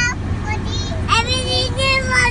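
Young children's high-pitched singing voices in short phrases, with a lower, held tone joining about a second in, over a steady low hum inside a car cabin.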